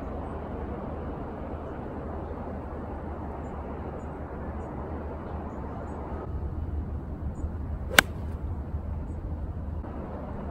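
An 8-iron striking a golf ball teed up high: one sharp click about eight seconds in, over a steady low outdoor rumble. The golfer thinks the club caught the top of the ball.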